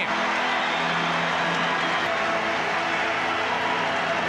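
Baseball crowd giving a standing ovation after a home run, cheering and clapping steadily.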